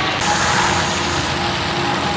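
An engine running steadily: a constant hum over an even hiss.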